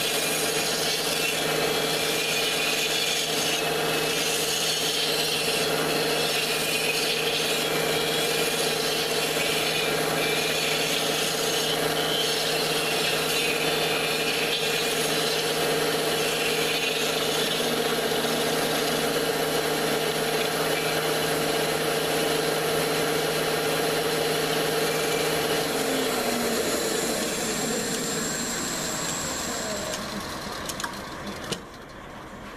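Power-driven rotary cutter cutting into a silver maple blank on a wood lathe: a steady motor hum under a rasping scrape of wood. In the last few seconds the motor's pitch slides down and the sound fades as it winds down.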